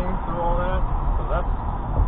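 Steady low road and engine rumble of a moving car, heard from inside the cabin, with brief snatches of a voice over it.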